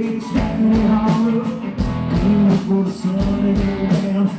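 Live rock band playing loudly: electric guitars and bass over drums keeping a steady beat.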